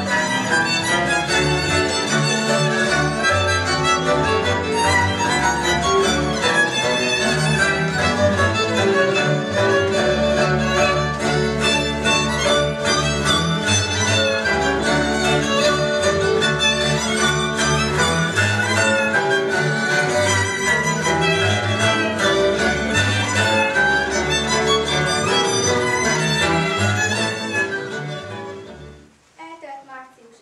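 Folk dance music led by fiddle with string-band accompaniment, playing for a costumed couple dance with a steady pulsing bass; it fades out and stops near the end.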